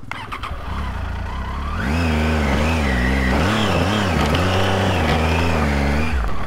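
Triumph Tiger motorcycle's three-cylinder engine pulling up a steep, rocky track; the revs rise about two seconds in, then repeatedly rise and fall as the throttle is worked over loose stones, with traction control switched off to stop the bike cutting out.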